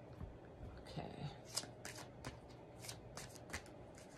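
A deck of tarot cards shuffled by hand: a run of sharp card snaps and taps, about seven in three seconds, the loudest about one and a half seconds in.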